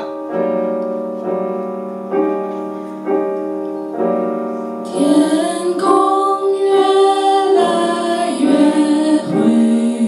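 Live song on a stage keyboard with a piano sound: chords struck about once a second, each left to ring. A woman's singing voice joins about halfway through.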